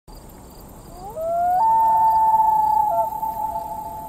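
A drawn-out howl-like animal call over a steady hiss: it glides upward about a second in, then holds one long note that dips near three seconds, and cuts off abruptly at the end.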